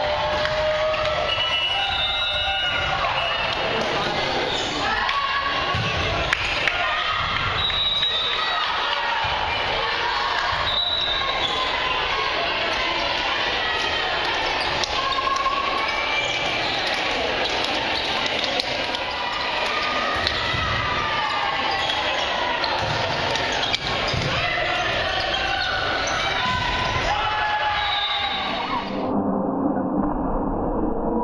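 Echoing gymnasium sound of a volleyball match: many voices talking and calling over one another, with scattered ball hits and bounces and short squeaks of sneakers on the hardwood court. About a second before the end the sound abruptly turns duller.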